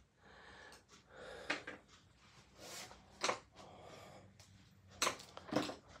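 Faint handling noises: soft rustles and swishes with a few light clicks or taps about one and a half, three and five seconds in.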